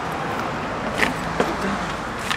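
Steady road traffic noise, with two short sharp clicks about a second in.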